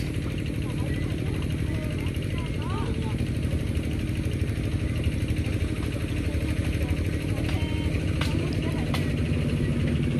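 An engine running steadily at an even speed, with faint voices of people in the background.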